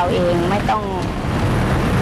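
A woman talking over steady road traffic noise.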